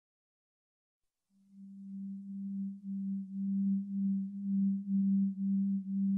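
A single low, steady drone tone that fades in about a second and a half in and swells and dips about twice a second: the opening sound of an intro sequence.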